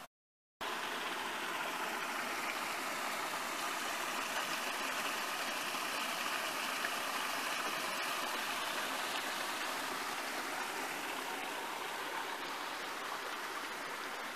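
Shallow creek water spilling over a small drop into a pool: a steady rush that starts about half a second in.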